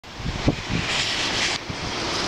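Gusty wind buffeting the microphone: low rumbling thumps in the first second, then a rushing gust from about a second in that cuts off suddenly.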